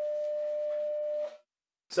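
A steady single-pitched tone, also heard under the speech just before, that cuts off suddenly just over a second in, leaving a short silence.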